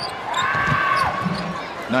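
Basketball game sound on a hardwood court: a long, high sneaker squeak over steady arena crowd noise. The squeak lasts about a second and slides down in pitch as it ends.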